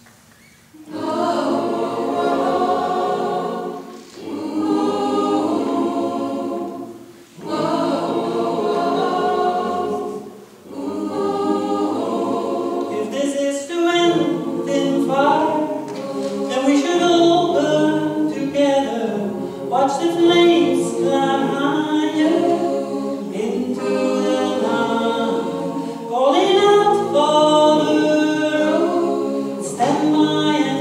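Mixed choir of men and women singing a cappella, starting about a second in. The first phrases are broken by short pauses, then the singing runs on without a break.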